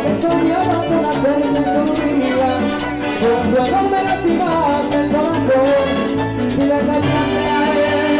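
A live Latin dance orchestra playing up-tempo tropical dance music. A steady, repeating bass line and evenly pulsing percussion, including a hand-held metal güira scraper, run under a melody.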